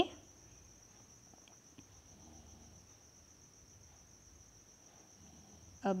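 Quiet room tone with a faint, steady high-pitched tone above it.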